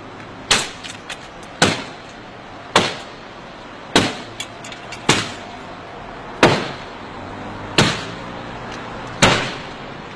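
Heavy blows struck one after another on a black Mercedes-Benz S-Class saloon's bodywork as it is being smashed up: eight loud impacts, roughly one every second and a bit, each ringing briefly, with a few lighter knocks between them.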